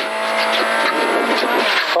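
Ford Fiesta rally car heard from inside the cabin, its engine held at steady high revs, with the hiss and rattle of gravel under the tyres.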